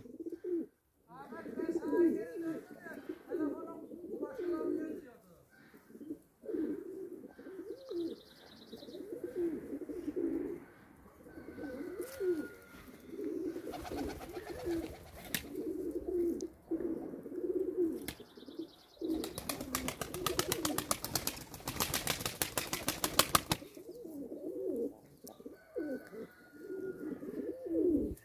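A flock of Hünkari domestic pigeons cooing over and over with low, rolling coos. A pigeon beats its wings in a rapid run of claps, briefly about halfway through and then for several seconds soon after.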